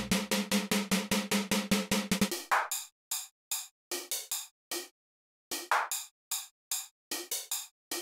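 Electronic drum-machine beat: a quick run of hi-hat and snare hits, about six a second, over a steady low tone for the first two seconds, then the low tone drops out and the beat thins to scattered hits with short silences between them.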